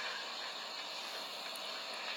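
Steady background hiss with no distinct sound event: room tone between exclamations.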